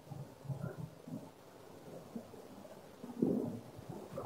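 Quiet room tone with faint, muffled low murmurs, with a slightly louder murmur about three seconds in.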